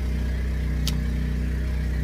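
Portable generator running steadily inside a box lined with acoustic board, a constant low engine hum. A single short click about a second in.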